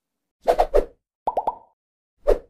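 Cartoon-style pop sound effects for an animated transition of circles: a short pop about half a second in, then three quick rising bloops.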